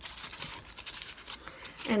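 Paper cupcake liner crinkling softly and irregularly as it is handled and twisted with a chenille stem.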